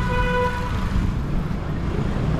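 A vehicle horn sounds once, a single steady toot of under a second at the start, over a continuous low rumble.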